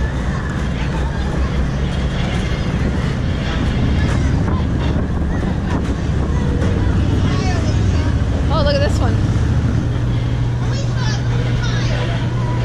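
A steady low machine drone of amusement ride machinery, with the chatter of a crowd and a few raised voices over it, one standing out about two-thirds of the way in.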